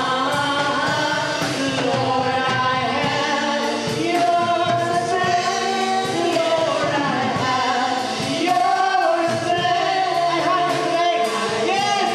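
A group of voices singing a worship song, with long held notes that waver in pitch and carry on without a break.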